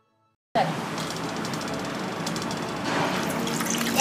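Water and cubes of aloe vera gel poured through a metal mesh strainer into a stainless steel bowl: a steady splashing pour that starts suddenly and gets louder about three seconds in.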